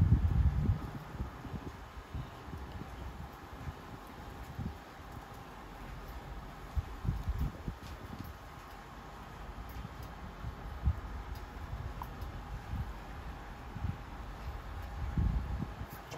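Wind buffeting the microphone outdoors: an irregular low rumble that swells and fades, with a few light clicks.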